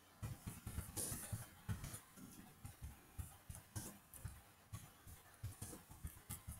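Computer keyboard typing: irregular keystrokes, a few per second, each a soft thud with a click, picked up faintly by the recording microphone.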